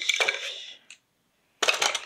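Paintbrushes clinking and rattling together in a container as they are rummaged through, in two short clusters of clicks with a brief silent break between them.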